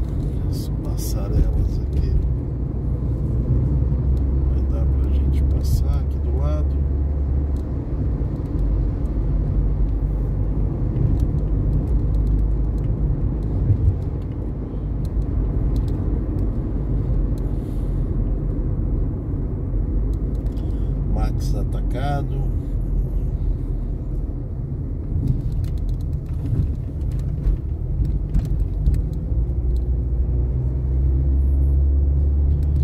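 Steady low rumble of a car's engine and tyres heard from inside the cabin while driving at road speed, with a few brief higher-pitched sounds about a second in, around six seconds and a little past twenty seconds.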